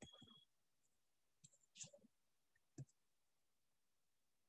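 Near silence broken by a few faint clicks and taps: a short burst at the very start, a small cluster about two seconds in and a single click near three seconds.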